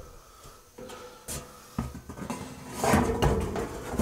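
A thin rusted sheet-metal backsplash panel being handled and set against the wall behind a kitchen sink: a few light knocks, then a louder metallic rattle and scrape about three seconds in as the sheet flexes and meets the wall and counter.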